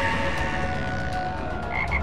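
A frog croaking, a low pulsing rattle, under fading sustained music tones, with a brief higher tone near the end.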